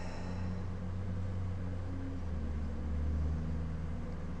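A steady low rumble with faint, shifting hum tones, a little louder about three seconds in.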